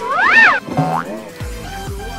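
Cartoon sound effects for a peanut tossed up and caught in the mouth: a tone that glides up and then back down in an arc, a short upward glide, then low tones dropping in pitch like a boing, starting about halfway through.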